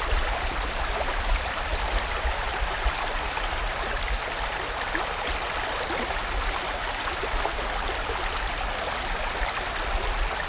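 Mountain stream flowing steadily: an even wash of water noise with a low rumble underneath.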